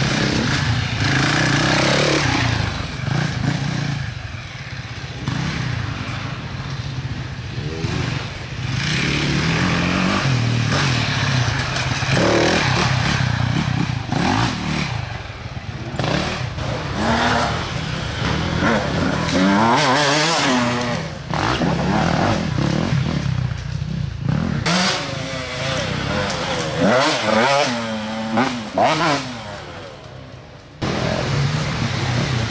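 Off-road dirt bike engine revving hard on and off the throttle, its pitch repeatedly rising and falling as it is ridden over uneven ground.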